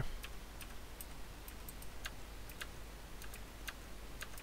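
Irregular, faint keystrokes on a computer keyboard, a dozen or so scattered clicks, over a low steady hum.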